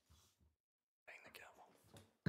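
Near silence: faint room tone, cutting out completely for about half a second near the middle, followed by faint murmured voices.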